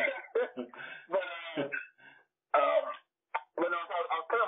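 A man's voice talking in conversation, heard over a narrowband call line, with short pauses between phrases.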